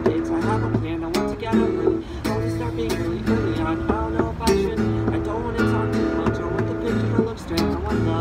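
Acoustic guitar strummed in chords with a steady rhythm.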